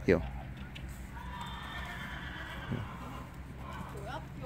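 A horse whinnying: one drawn-out, wavering call lasting about two seconds, starting about a second in. A single soft thud comes near the end.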